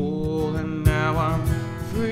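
Cole Clark Fat Lady acoustic guitar strummed, with a man singing long held notes over it. A hard strum stands out a little under a second in.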